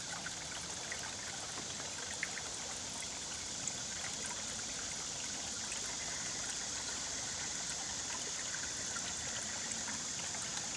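Small stream trickling steadily among boulders, with scattered little splashes and plinks over a constant hiss of running water.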